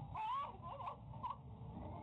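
A person's short high-pitched squeals, the loudest just after the start and a couple of shorter ones after it, heard through a security camera's thin-sounding microphone over a steady low rumble.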